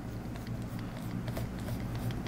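Faint light ticks and scratches of a stylus drawing quick strokes on a graphics tablet, over a steady low hum.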